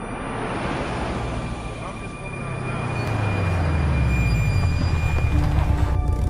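Intro background music swelling into a rush of noise over low wavering tones, growing steadily louder until the cut near the end.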